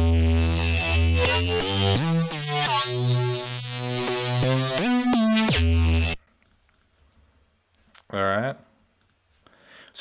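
Serum software synthesizer playing a bass melody transposed up one octave, with notes that glide in pitch over a heavy low end. It stops abruptly about six seconds in.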